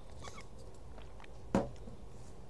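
A single sharp knock about one and a half seconds in, with a few faint clicks before it, over a low steady hum.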